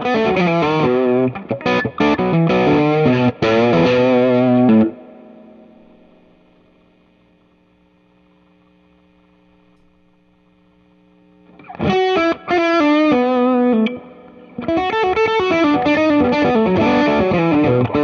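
Electric guitar, a Telecaster played through a Freekish Blues Alpha Drive overdrive pedal into a Dr. Z Maz 18 combo amp, playing blues-rock licks with a driven tone. About five seconds in, a last chord is left to ring and fades away for several seconds while a knob on the pedal is turned. The playing starts again near the twelve-second mark.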